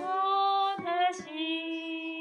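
A woman singing a Catholic hymn, holding three long notes that step down in pitch, over digital piano accompaniment.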